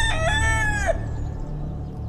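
A rooster crowing: the drawn-out last notes of a cock-a-doodle-doo, ending in a falling tail about a second in.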